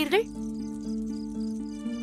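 Background music score of sustained, slowly shifting low notes, with faint, rapid high chirping in the first second and a half.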